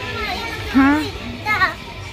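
Voices only: a short questioning "Ha?" about a second in, then a young child's brief high-pitched speech.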